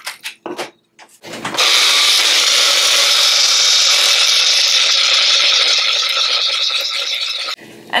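A few clicks and knocks as the mini blender's cup is fitted onto its base, then a second and a half in the small blender motor starts and runs steadily for about six seconds, blending chopped carrot with a little water, before cutting off shortly before the end.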